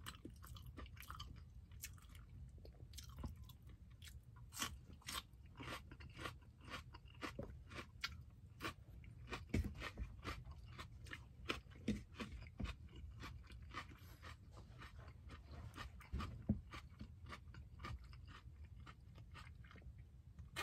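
A person chewing and biting food: faint, irregular crunches and mouth clicks, several a second.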